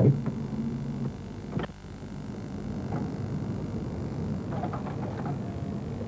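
Low steady hum of video tape editing equipment, with a single sharp click just under two seconds in.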